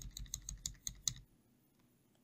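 Faint computer keyboard typing: a quick run of light key clicks that stops a little over a second in.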